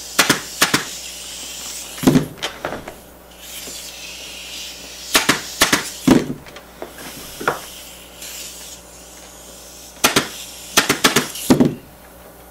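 Pneumatic upholstery staple gun firing staples into a wooden chair frame: sharp shots in quick clusters of two to four, with a couple of short stretches of air hiss between them.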